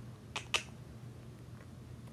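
Two quick sharp clicks close together, then a faint steady low hum.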